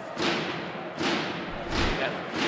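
Ice hockey arena sound: two sharp knocks about a second apart, each ringing off, then a low thud near the end.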